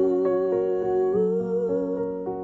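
A woman's voice holding a long wordless sung note with a slight waver, stepping up in pitch about a second in, over sustained jazz band chords and a bass line.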